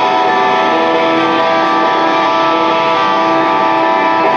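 Electric guitar playing held, ringing chords through an amplifier, at a steady level.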